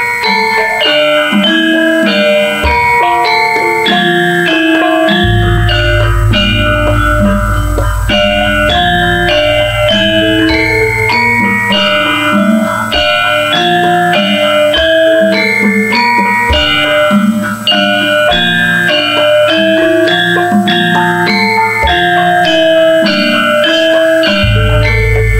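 Javanese gamelan orchestra playing: bronze metallophones ringing out a steady run of melody notes over drum strokes. A deep low tone comes in about five seconds in and rings on for several seconds.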